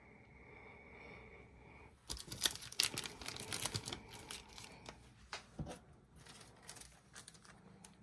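Faint crinkling and rustling of trading cards and plastic being handled, starting about two seconds in as a few seconds of dense crackle, then thinning to scattered light clicks.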